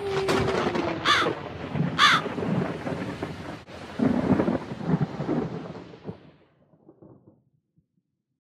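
Spooky sound effect of a rolling thunder rumble, with two crow caws about a second apart, fading out over the last few seconds. A held low note rings under the first second.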